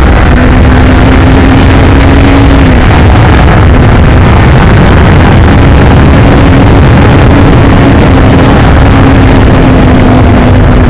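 A 2021 Kawasaki Ninja 400's parallel-twin engine running at a steady cruise under way, heard from the rider's seat over a heavy low rumble of wind and road noise. The engine's note holds one steady pitch, fades about three seconds in and comes back about five and a half seconds in.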